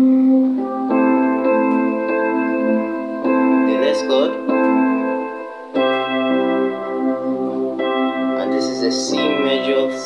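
Digital keyboard on a piano voice playing slow, sustained chords, with a new chord struck about every two seconds. The left hand plays a wide, stretched voicing.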